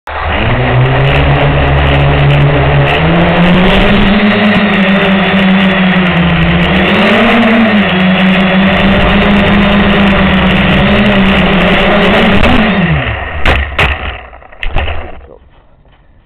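Walkera Hoten-X quadcopter's four electric motors and propellers spinning up and running loud and close, heard from its onboard camera, the pitch stepping up and wavering as it flies. About 13 seconds in the motors wind down and stop, followed by a few sharp knocks.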